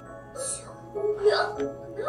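Anime dialogue: a girl's voice speaking a short subtitled line, with soft background music under it.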